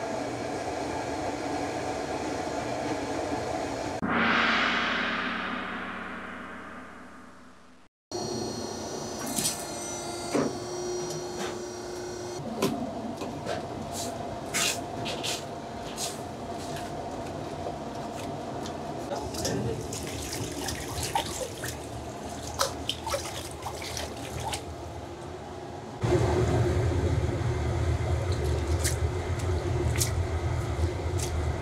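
Restaurant kitchen sounds: a hiss that fades away over a few seconds, then a mesh strainer clinking against a steel pot of steaming water. A louder, steady rush of running water starts about four seconds before the end, as noodles are rinsed by hand in a plastic basket at the sink.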